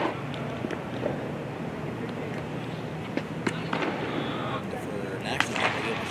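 Ballpark ambience of people talking, with sharp pops a little after three seconds and again near the end: a fastball smacking into the catcher's mitt.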